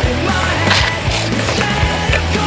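Rock music with bass and drums, with a skateboard rolling along a concrete sidewalk heard with it.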